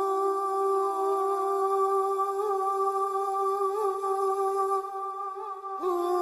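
Background music of a wordless humming voice holding one long note with small wavering ornaments, then moving to a new, slightly higher note near the end.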